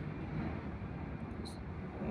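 Steady low background noise with no clear source, and one faint short tick about one and a half seconds in.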